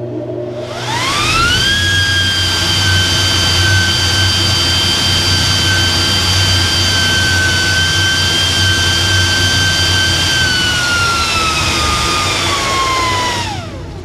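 A 3 hp cyclone dust collector running with a low hum, its air rushing out of an open 6-inch duct through a handheld vane anemometer at about 5,500 feet per minute. A high whine rises over the first second or two as the fan spins up, holds steady, then sags and cuts off sharply near the end as the meter is pulled out of the airstream.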